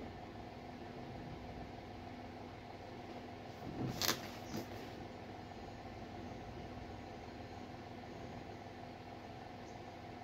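Quiet, steady room hum, with one short crinkle of a cardboard retail package being handled about four seconds in.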